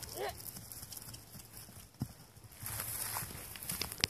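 A pony's hooves thudding softly on grass turf as it is ridden across the field, with one sharper thump about two seconds in.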